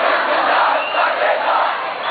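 A large crowd of street protesters shouting, a loud continuous mass of many voices with no pauses.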